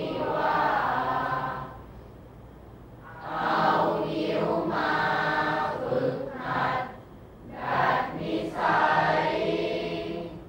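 A group of voices reciting Thai verse aloud together in a chanting tone, phrase by phrase, with short pauses between lines.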